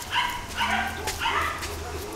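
Kuvasz dogs giving short, high-pitched yips, three of them about half a second apart.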